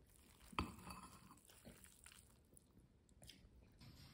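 Faint chewing and crunching while eating noodles, with one sharp click of metal chopsticks against the ceramic bowl about half a second in.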